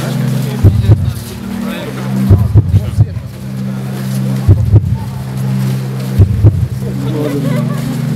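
Heartbeat-driven electronic background music from a pulse-reading light installation: a sustained low drone chord under deep thumping beats. The beats come in clusters of two or three, about every two seconds, following the measured heartbeat.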